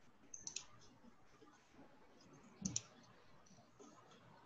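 A few faint clicks over quiet room tone: a small cluster about half a second in, and a louder click with a dull knock about two-thirds of the way through.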